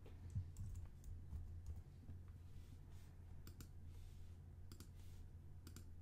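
Faint computer keyboard typing and mouse clicks: scattered short clicks, some in quick pairs, over a low steady hum.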